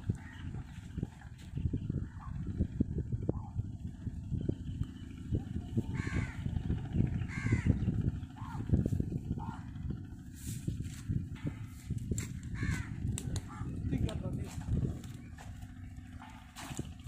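A few short bird calls over a low, uneven rumble.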